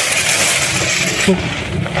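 Steady rushing noise that drops away about a second in, followed by a brief voice sound.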